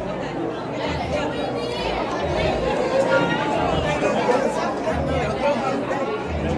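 Several people talking over one another in a large room: unclear crowd chatter.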